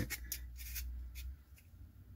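Handling sounds from hands threading a filter adapter ring onto a Ricoh GA-1 lens adapter: a few light clicks and rubbing in the first second or so, then quieter.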